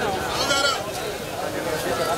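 Crowd of people talking over one another, with a high-pitched voice calling out briefly about half a second in.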